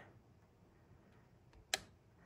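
Near silence with a single short, sharp click about three-quarters of the way through.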